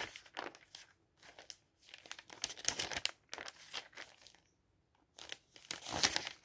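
Thin glossy pages of advertising folders being turned and smoothed flat by hand, crinkling and rustling in irregular bursts, with a quiet pause of about a second around four seconds in before the next page turn.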